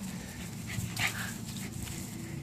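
Shetland sheepdogs playing together, with one dog giving a short, high-pitched cry about a second in.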